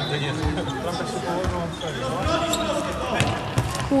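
A ball struck and bouncing several times during play, heard as short dull thuds spread through the few seconds, with players' voices in the background.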